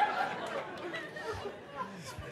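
Audience chatter and laughter trailing off, the crowd's voices fading over the first second and a half.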